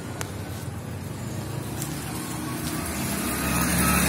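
A low, steady motor rumble that grows gradually louder.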